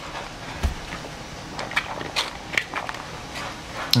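Spoons tapping and scraping in bowls and the mouth sounds of eating: scattered small clicks, with a soft low bump about half a second in.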